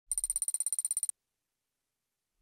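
Rapid, high-pitched electronic bell-like trill used as an intro sound effect, pulsing about seventeen times in a second and cutting off abruptly about a second in.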